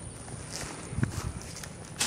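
Footsteps on dry leaf litter: a few light, irregular crunches and knocks.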